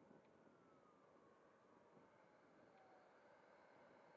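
Near silence, with a faint whine falling in pitch over about three seconds from the FMS Rafale's 80mm electric ducted fan flying at a distance.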